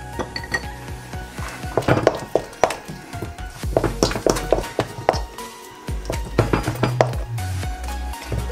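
Wooden spoon knocking and scraping against a stainless steel mixing bowl in quick, irregular strokes as thick choux paste is beaten by hand, working in the eggs until smooth. Background music plays underneath.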